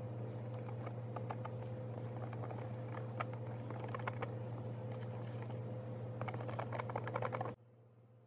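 A stir stick clicking and scraping against the sides of a clear plastic cup as microballoon powder is mixed into liquid resin. The strokes come quicker near the end, over a steady low hum. The sound stops abruptly near the end.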